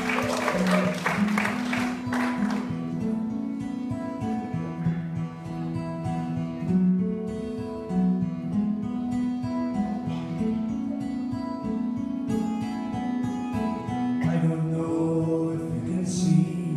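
Solo acoustic guitar played live, a picked, ringing song intro, with audience applause dying away in the first couple of seconds. A man's singing voice comes in near the end.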